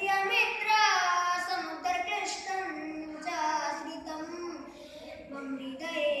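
A boy singing solo and unaccompanied, a Bollywood film song in Sanskrit translation, drawing out long held notes that bend in pitch, with short breaths between phrases.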